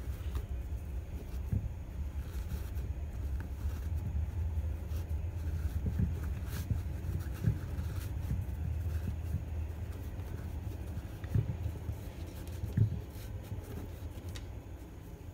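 Hands handling a sneaker and its laces on a wooden surface: soft rustling and a few light knocks, the clearest about halfway through and twice near the end, over a steady low rumble.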